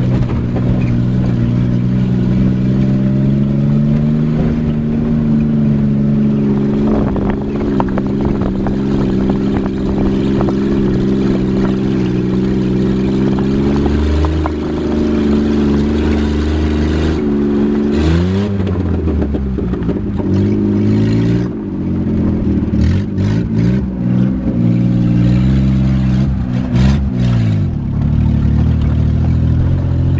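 A small vehicle's engine heard from inside the cabin while driving on a rough unpaved mountain road, with rattling and clatter over the bumps. The engine pitch climbs and falls several times in the second half.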